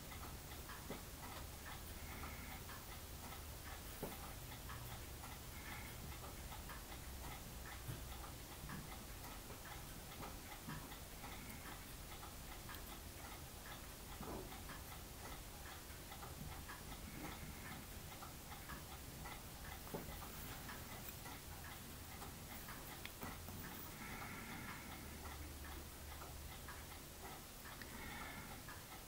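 Faint ticking and a few small, sharp clicks over a low room hum.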